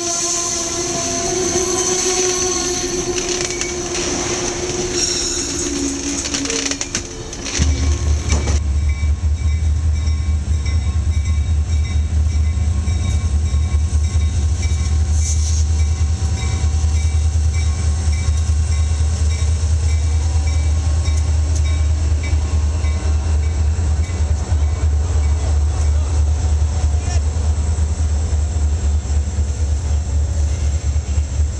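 Amtrak Amfleet passenger cars rolling past close by, with steady high wheel squeal. After a cut about 8 s in, a deep steady rumble from a CSX diesel freight locomotive as it draws past at the head of a train of autorack cars.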